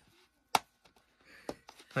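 A plastic blister pack of carabiner clips being handled: one sharp click about half a second in, then a few fainter ticks near the end.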